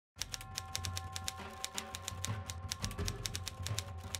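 Typewriter sound effect: rapid, even key clacks, about seven or eight a second, over a low droning music bed with a couple of held tones.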